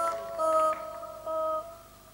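Italo disco song intro on synthesizer: about three short held chords, growing quieter near the end.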